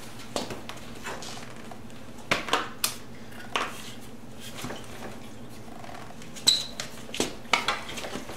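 Irregular metallic clinks and knocks from the rear of a Yamaha Virago 250 as its rear suspension is pushed down and bounced, testing a newly fitted flat metal saddlebag-mount strap that runs from the fender down to the trailing arm. The clinks come in small groups, the loudest about six and a half seconds in.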